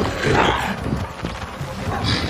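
Dubbed crocodile growls in a few short, rough calls.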